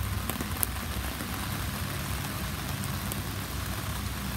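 Heavy rain pouring steadily on wet ground and plants, with no wind, as an even hiss.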